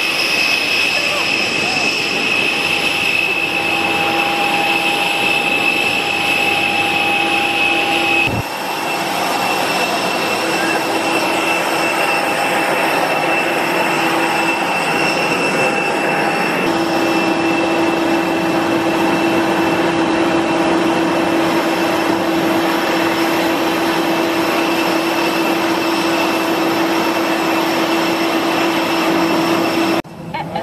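Steady whine and rushing air of a parked jet airliner, heard out on the apron and then inside the cabin; the pitch and balance of the whine change abruptly about eight seconds in and again about seventeen seconds in.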